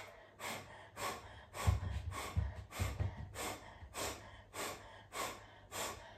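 A woman doing breath of fire: short, forceful exhalations through the nose in a steady rhythm, about two a second. Low bumps come in with a few of the strokes about two to three seconds in.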